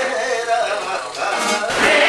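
A man singing to a strummed acoustic guitar. Near the end it cuts abruptly to fuller live concert music.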